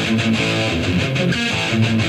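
A 1980s heavy metal band playing the opening seconds of a song, led by electric guitar.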